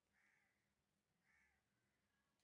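Near silence, broken by two faint bird-like calls about a second apart.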